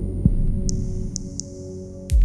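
Minimal electronic synthesizer music: steady low hum tones with a single low thump about a quarter second in, then three short high clicks with a thin high hiss that hangs on after them, the whole slowly fading.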